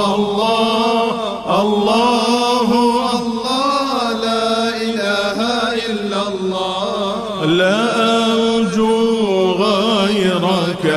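Voices chanting a devotional hymn of praise (hamd) in a long, unbroken, ornamented melodic line that glides and bends in pitch.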